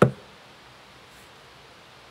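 A single sharp click right at the start, then steady faint hiss.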